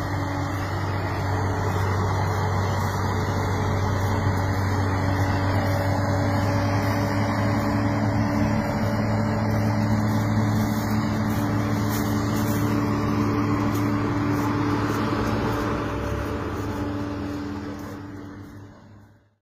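A vehicle engine running steadily at low speed, a constant low drone. It fades away over the last two seconds.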